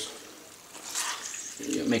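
Water trickling and dribbling off soaked gelatin sheets as they are squeezed out by hand, a soft trickle about a second in.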